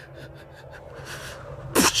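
A man's sharp, noisy breath, like a gasp or half-sneeze, about three-quarters of the way through, over a faint steady low background hum.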